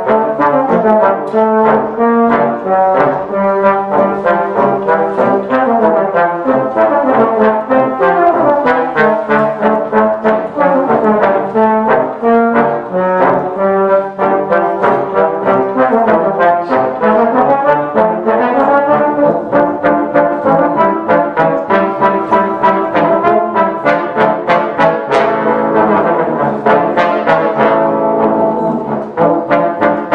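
Trombone quintet, five trombones playing together in harmony, a busy passage of many short, detached notes.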